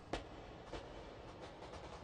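Faint footsteps on a hard stone floor: a few soft, irregular steps over a low hiss.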